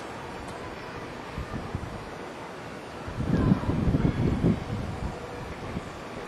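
Wind buffeting a camcorder's microphone: a steady low rush with a stronger run of rumbling gusts about three seconds in, lasting over a second.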